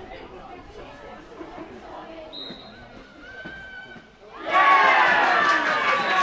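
Low crowd chatter, then about four seconds in a crowd breaks into loud, high-pitched cheering and shouting at a goal being scored.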